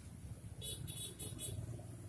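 A low, steady motor-vehicle rumble. About half a second in comes a quick run of light metallic clicks, about five a second, from a 22 mm socket wrench being worked on the nut of an automatic scooter's CVT drive pulley as it is tightened.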